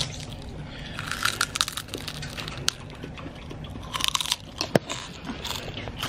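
Close-miked crunching and chewing of ketchup-flavoured potato chips. The crisp crunches come in clusters, about a second in and again about four seconds in, with a few single crackles between.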